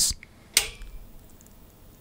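A single sharp click about half a second in as the load is switched on, with a brief ring after it, then quiet room tone.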